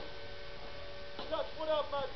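A steady electrical hum made of several fixed tones, unchanging throughout. A short bit of speech comes near the end.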